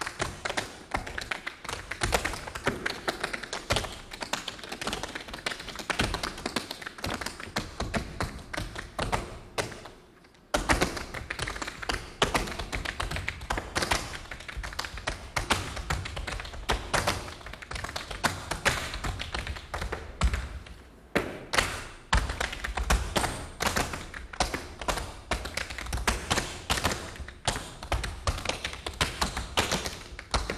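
Tap dancing: hard-soled shoes striking a stage floor in fast, dense rhythmic taps, mixed with heavier heel stomps. A brief pause comes about ten seconds in, then the footwork starts up again.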